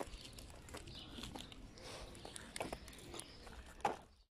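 Frogs croaking faintly, with footsteps on asphalt and a louder click just before the end.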